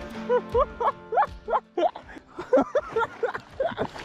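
A man laughing excitedly in a quick series of short, rising whoops.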